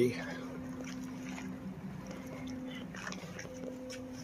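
A steady low hum at two pitches, with faint rustles and light ticks over it.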